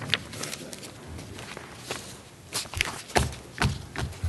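Footsteps of people walking away across a room, a string of irregular steps and knocks, the loudest two thumps about three seconds in.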